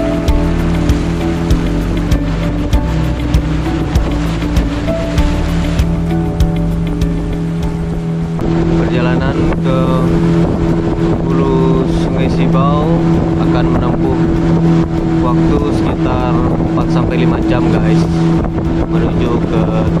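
Background music with a beat for about the first eight seconds, then a motorboat's engine running steadily as the boat travels, with a man's voice over it.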